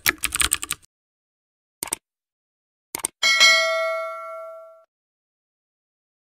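Keyboard typing sound effect for the first second, then two single clicks and a bell ding that rings out for about a second and a half: the click-and-notification-bell sound of a subscribe-button animation.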